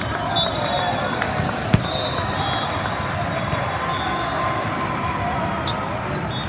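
Echoing din of a large hall with several volleyball courts in play: many voices chattering and volleyballs being hit and bouncing, with one sharp smack of a ball just under two seconds in.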